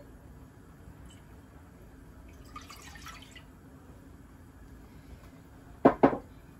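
Almond milk poured from a glass measuring cup into a saucepan, a faint steady trickle. Near the end there is one short, sharp knock.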